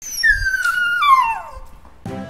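A dog whining once: a long whimper that slides down in pitch over about a second and a half and fades out.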